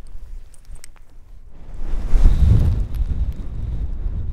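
Wind buffeting the camera microphone, with a few light handling knocks early on, then a strong gust rumble swelling about two seconds in.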